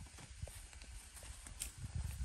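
Faint rustling and irregular soft knocks as green chili peppers are picked and someone walks among the pepper plants, with a low rumble underneath.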